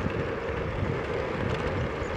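Steady running noise of an electric scooter ridden at speed on a rough tarmac path, an even hum with rumble underneath.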